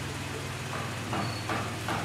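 Steady low hum of a running engine.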